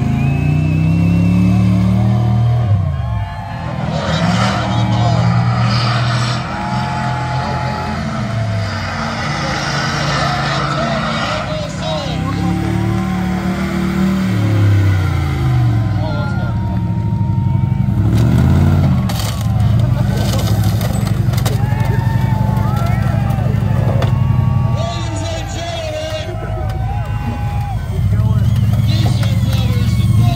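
Big off-road wrecker truck engine revving repeatedly, its pitch climbing and falling with each blip, with voices over it.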